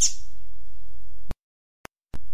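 A single sharp, high chirp from a recorded songbird's tui-tuipia training song, the song used to teach coleiros (double-collared seedeaters), heard over a steady low hum. A little over a second in, the sound cuts off abruptly to dead silence, with one faint click in the gap: an edit or loop point in the recording.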